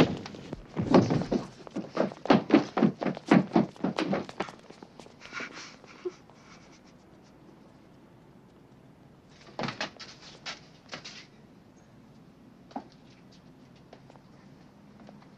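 A scuffle of heavy thuds and footsteps, about a dozen quick knocks over the first four seconds, then quiet. About ten seconds in there is a short cluster of five or so knocks, and one more single knock comes near the end.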